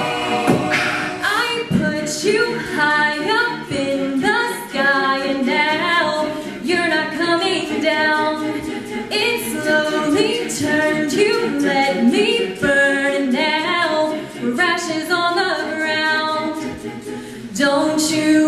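Mixed-voice a cappella group singing a pop song without instruments: a female soloist on a microphone over the group's layered vocal backing, which keeps a steady beat.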